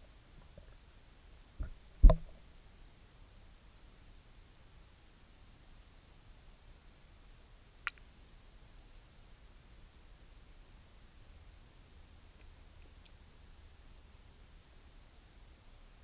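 Muffled underwater hush heard through a GoPro's waterproof housing, broken by two dull knocks about one and a half and two seconds in, the second much the louder, and a single sharp click near the middle.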